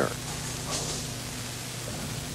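Steady background hiss with a low electrical hum, and no distinct event.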